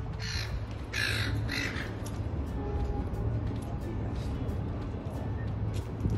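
A bird calling three short times in the first two seconds, over background music.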